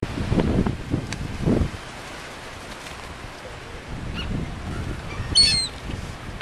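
Seagulls flapping their wings close to the microphone, with low buffeting wing beats in the first couple of seconds. A short burst of high-pitched gull calls comes near the end.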